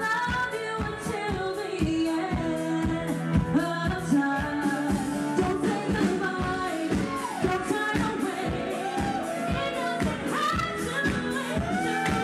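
A woman singing a Latin pop song live into a handheld microphone, her voice gliding over backing music with a steady drum beat.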